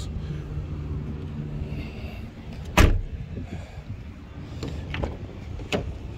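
Honda Jazz tailgate being shut, a single loud thump about three seconds in, followed by a couple of lighter clicks, over a low steady hum.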